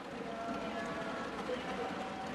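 Many members of the house thumping their wooden desks in applause, a dense steady patter, with voices mixed in.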